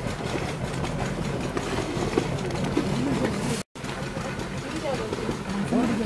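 A steady low engine hum, with indistinct voices in the background.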